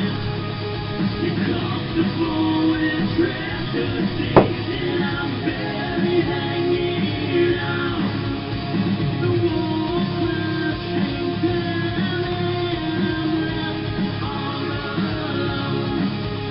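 Rock music with electric guitar, and one sharp clack of a pool shot about four seconds in.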